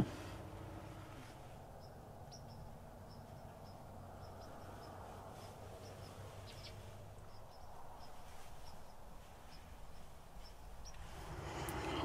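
Quiet dusk ambience: faint, short, high chirps from a small bird, repeated irregularly, over a low steady background rumble.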